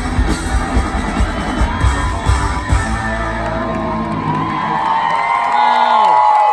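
Live rock band with drums and electric guitar playing out the end of a song, then holding a final chord that dies away about four seconds in. A large crowd whoops and yells over it, getting louder near the end.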